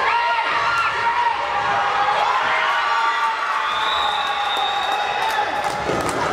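Children shouting and cheering, many high-pitched voices overlapping, some shouts held long.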